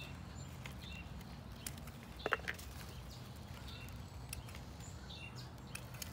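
Faint, scattered bird chirps over a steady low background hum, with two sharp snips a little over two seconds in from pruning shears cutting bean pods off the plant.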